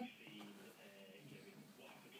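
Near silence, with a faint voice murmuring in the background during the first second or so.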